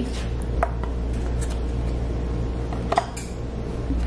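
Light knocks and clicks of refrigerated cookie dough rounds and a plastic tray against a Farberware metal baking pan: about five separate taps, the loudest about three seconds in, over a steady low hum.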